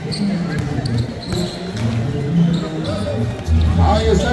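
A basketball being dribbled on a concrete court, with people's voices around it.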